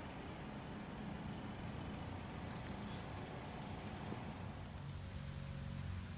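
A vehicle engine running steadily at low speed, a low hum that firms up a little near the end.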